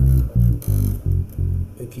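Five-string electric bass guitar playing five low plucked notes in quick succession: the 2-1-6-5-5 (re-do-la-so-so) phrase of the bass line, ending on the low five.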